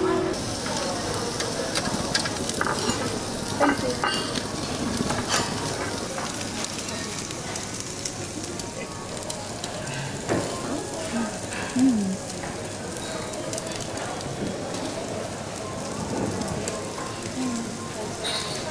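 Slices of wagyu sirloin sizzling steadily on a tabletop yakiniku grill, with a few sharp clicks in the first half.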